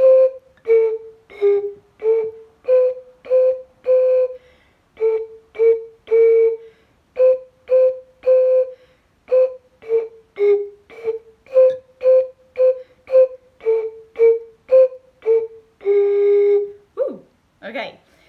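Three green glass bottles tuned with water to B, A and G, blown across the tops to play a simple tune of short separate notes on three pitches, ending on a longer held low note. The fullest bottle gives the highest note, the emptiest the lowest.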